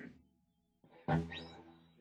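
Guitar chord struck about a second in, ringing and fading; a short sound is heard just before it, at the start.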